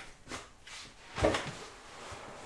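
A person sitting down in a chair at a table: a soft thump with rustling about a second in.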